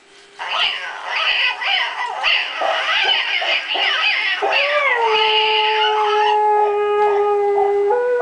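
Dog howling along, in quick wavering and gliding high pitches. About halfway through, one long steady note is held until near the end.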